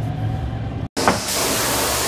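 Steady engine and road hum inside a moving van's cab. It cuts off abruptly just before a second in and is replaced by the steady hiss of a truckmount carpet-cleaning wand's airflow.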